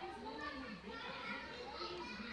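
Children talking and playing in the background, their high voices chattering throughout.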